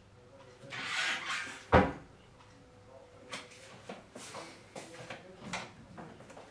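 Rustling, then one sharp, loud knock a little under two seconds in, followed by a scattering of lighter clicks and taps: household handling noises, like a cupboard or door being shut.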